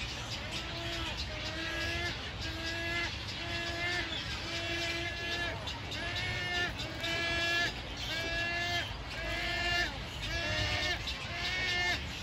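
Nesting herons calling: a steady run of short calls repeated about one and a half times a second, each turning slightly upward at the end.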